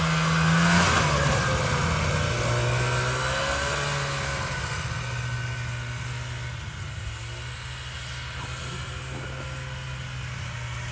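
Vintage two-stroke snowmobile engine passing close by, loudest about a second in, its note dropping as it goes past, then running steadily and fading as the sled rides away.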